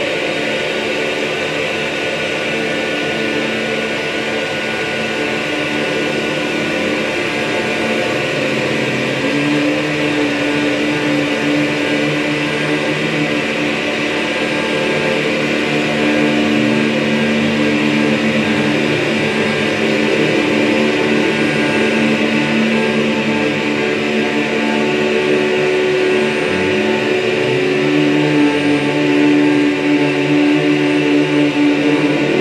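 Dense, steady electronic drone from voices run through effects and electronics: layered held tones over a hissing haze. A new held tone enters about nine seconds in, and a tone slides in pitch near the end.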